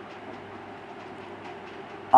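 Steady low background hiss with a faint constant low hum, and no distinct event.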